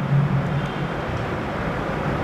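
Steady low background rumble with hiss, like distant traffic, with a brief faint low hum in the first half-second.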